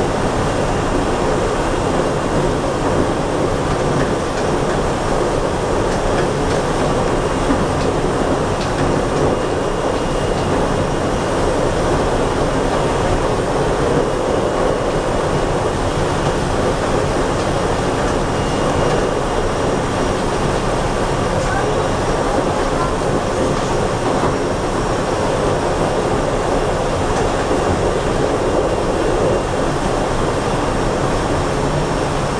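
Running noise inside a SEPTA Silverliner V electric multiple-unit railcar as it travels along the line: a steady, even rumble of wheels on the rails heard from the cab.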